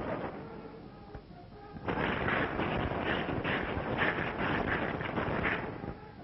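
Film soundtrack: faint background music, then a loud rushing noise with a pulsing edge from about two seconds in, lasting nearly four seconds before it drops away.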